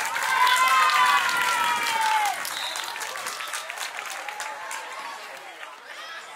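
Spectators clapping and cheering, several high-pitched voices shouting together over the claps. It is loudest for the first two seconds or so, then tapers off into chatter.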